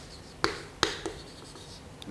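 Chalk tapping against a chalkboard as characters are written: two sharp taps less than half a second apart, about half a second in.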